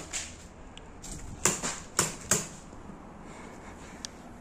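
Paintball markers firing: a few sharp pops, three in quick succession around the middle, the loudest about a second and a half in.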